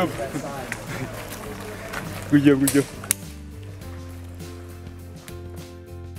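Outdoor voices of a group of hikers, with a short loud shout about two and a half seconds in. About halfway through this gives way to background music with steady held notes.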